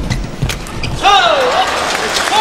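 Badminton doubles rally in a large hall: sharp racket hits on the shuttlecock and players' footwork on the court in the first half second as the rally ends, then a high-pitched sound that slides down in pitch about a second in.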